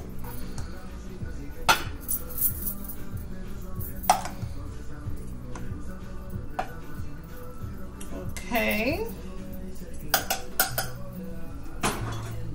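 A spoon clinking and knocking against a saucepan, with sharp strikes about two seconds in, about four seconds in, and a cluster near the end, over background music.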